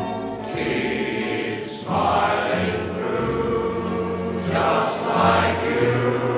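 Music: a choir singing slow, sustained chords, swelling louder about two seconds in.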